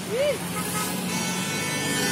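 Lamborghini Huracán's V10 engine running steadily as the car pulls past, growing slightly louder, with a short shout from the crowd near the start.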